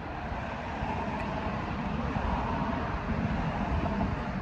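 Wind buffeting the microphone, mixed with the noise of a car passing on the street, the noise slowly growing louder.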